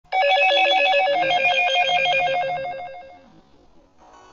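Electronic ringing tone trilling rapidly between two pitches, like a telephone ringtone, fading out about three seconds in.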